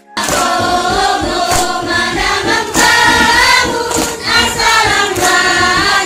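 A group of voices singing together, loud and close, with a sharp strike recurring roughly every second and a quarter.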